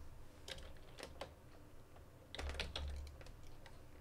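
Faint typing on a computer keyboard: a few scattered keystrokes, then a quicker run of key clicks about halfway through, as a font name is typed in.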